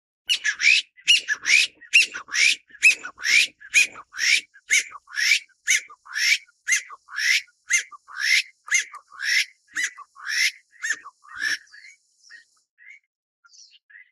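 Taiwan bamboo partridge calling: a loud run of sharp, repeated notes, about two and a half a second, that stops about eleven and a half seconds in. A few faint chirps follow.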